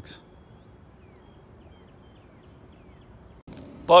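Faint outdoor background with a bird in the distance giving a series of short, thin, falling chirps.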